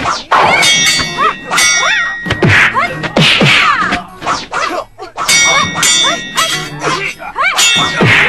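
Sword-fight sound effects: metal blades clashing in a rapid run of ringing clangs, with a short lull about halfway through.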